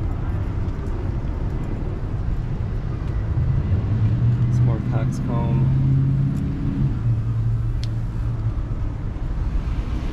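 City street traffic noise: a steady low rumble, with a motor vehicle's engine hum building a few seconds in, loudest in the middle, and dying away about two thirds of the way through. A brief voice is heard in the middle.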